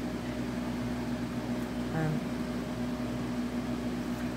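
A steady low machine hum with one unchanging pitch, like a running appliance or fan. About halfway through a woman says a short "um".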